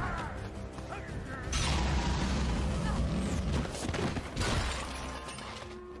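Action-film soundtrack of a hand-to-hand fight: music under sudden hits and crashes, with a louder stretch starting about a second and a half in.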